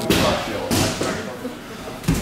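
Muay Thai sparring strikes: gloved punches and kicks landing on a guard and body protector with dull thuds, about three in two seconds.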